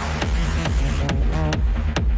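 Techno track in a DJ mix, with a steady four-on-the-floor kick drum about two beats a second and crisp hats. The full beat has just dropped back in after a filtered break, and a bright crash-like wash fades away over the first second.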